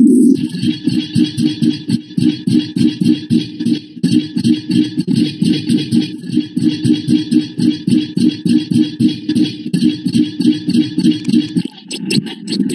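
Loud music played back from a logo-remix video on a computer, a fast even pulse of about five beats a second running throughout.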